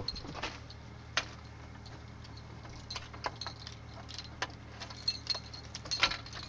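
Light clicks and jingles at irregular moments, of keys and door hardware being handled to open a door, over a steady low hum.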